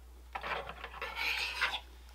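A pair of hands rubbing briskly together, a dry rasping that lasts about a second and a half and grows louder toward the end.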